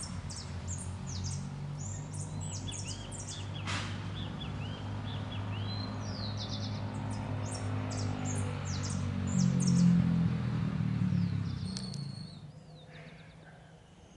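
Small songbirds chirping and trilling in quick, high calls, over a low steady hum that swells about ten seconds in and then fades away near the end. A single sharp click about four seconds in.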